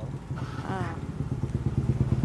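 A motorbike engine running steadily with an even low putter, and a brief voice speaking about half a second in.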